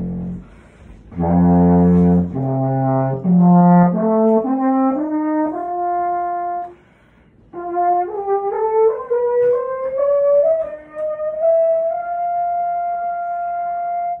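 A 12-foot alphorn in F played up its natural harmonic series: single notes climb one after another from a low pedal tone. After a short break near the middle, a slurred run rises smoothly through the upper harmonics, almost by step, to a long held high note. The pitch changes come from the lips and breath alone, since the horn has no valves or holes.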